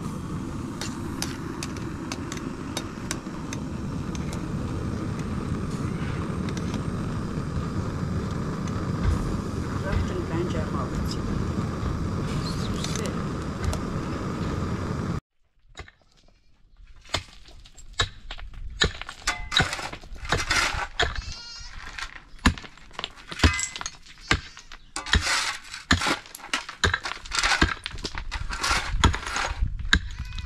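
A gas burner under a cooking pot gives a steady noise that cuts off suddenly about halfway through. Then a pick strikes stony ground in repeated sharp knocks, while livestock bleat with a wavering call.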